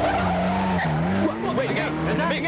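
A car's tyres screeching on the road with its engine running for about the first second, then shouting voices.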